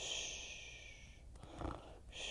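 A woman making pretend snoring sounds: a long hissing breath out, a short snore-like breath in about a second and a half in, then the hiss out starting again.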